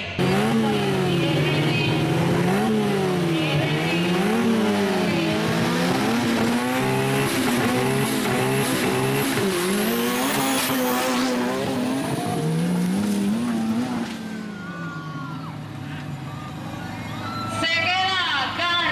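Engines of small turbocharged off-road 4x4s running loud, revving up and down over and over as they race down a dirt drag strip. The sound drops off sharply about fourteen seconds in, and a man's voice starts near the end.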